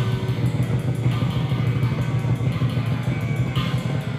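Live band music with guitar to the fore over a steady, heavy low end.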